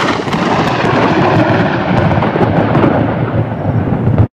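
Loud thunder: one long, continuous roll with a low rumble.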